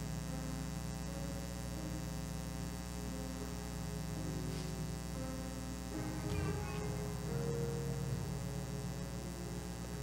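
Steady electrical mains hum through the church sound system, with faint, soft held keyboard notes under it.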